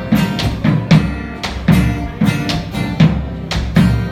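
Live instrumental passage: acoustic guitar with a drum struck in a steady beat, about two hits a second.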